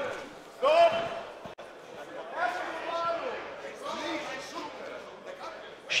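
Indistinct shouting voices from ringside at a kickboxing bout, a few separate calls echoing in a hall.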